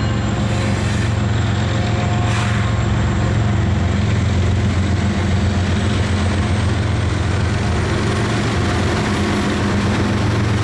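GE Evolution Series (GEVO) diesel locomotives at the head of a six-unit lash-up, working hard up a grade as they pass close by: a loud, steady, low engine drone with the rumble of wheels on rail. There is a single sharp click a couple of seconds in.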